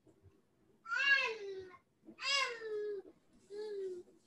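A cat meowing three times, about a second and a half apart, each meow a smooth falling call, heard over a video-call connection.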